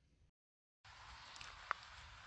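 Near silence: a moment of dead silence, then faint outdoor ambient hiss, with one short click about a second and a half in.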